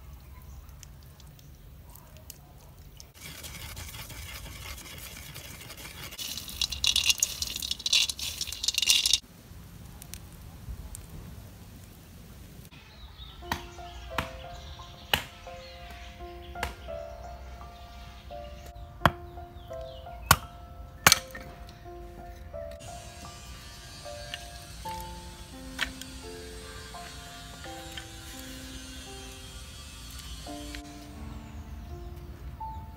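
Rough scraping of a knife working a coconut-shell ladle, in bursts for several seconds, then background music: a simple melody of separate held notes, broken by a few sharp knocks.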